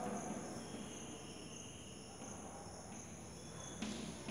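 Chalk writing faintly on a blackboard, with a steady high-pitched background tone throughout and a single light tap near the end.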